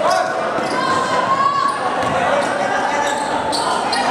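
Basketball being dribbled on an indoor court, with players and spectators calling out in the hall's echo.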